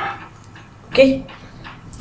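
Speech only: a man's voice says 'okay' once, about a second in, over quiet room tone.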